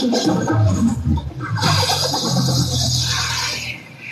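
DJ-mixed electronic dance music with a steady bass line; about a second and a half in, a hissing noise sweep comes in over the top, and the music dips down near the end as the mix changes.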